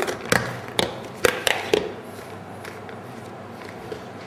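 Airtight lid of a small plastic jar being fitted and pressed shut: about six sharp clicks and taps over the first two seconds.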